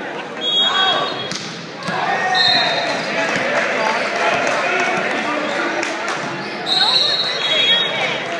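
Spectators and players chattering in a large, echoing school gym during a volleyball match. Three short, steady high-pitched tones cut through the chatter: one near the start, one at about two and a half seconds, and one near the end.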